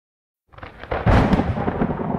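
Silence, then a rumble of thunder starts about half a second in and swells to a loud peak a second in.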